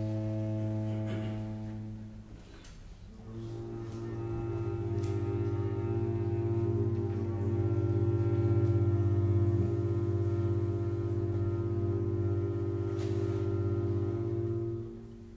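Microtonal contemporary chamber music: a low, sustained chord that fades away about two seconds in, then, after a brief gap, a new low chord that swells toward the middle and is held steadily.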